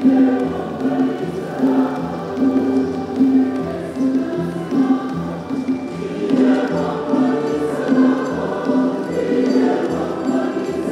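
A choir singing with a steady beat.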